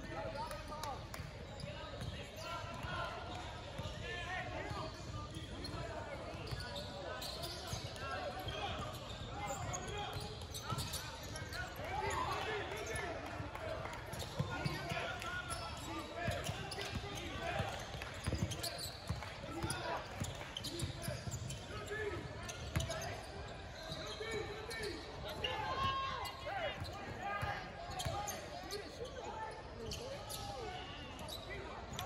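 Basketball being dribbled and bounced on a hardwood court, over a steady background of indistinct shouting and chatter from players and spectators, echoing in a large gym.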